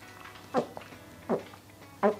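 A man gulping from an upturned glass wine bottle: two swallows, about three-quarters of a second apart, each a short sound falling in pitch.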